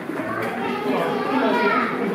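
Chatter of a crowd of onlookers with children's voices, a child's high voice loudest near the end.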